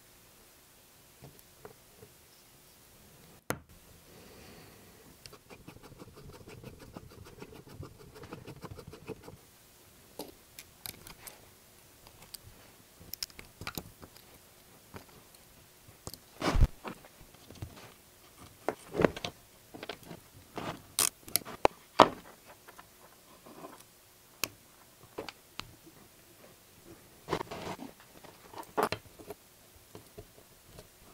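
Small metal parts and hand tools clicking, tapping and scraping against a miniature V-twin model engine as it is assembled by hand. Scattered sharp clicks, sparse at first and more frequent and louder in the second half.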